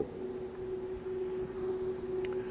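A steady hum with a faint hiss behind it.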